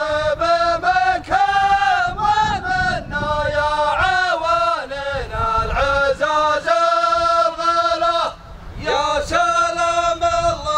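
Male voices chanting a sung poem in long, drawn-out syllables, with a brief pause about eight seconds in.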